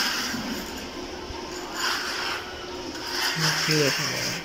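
Metal straightedge bar scraped across a freshly laid wet concrete floor to level it, in repeated scraping strokes. A short human voice sounds near the end.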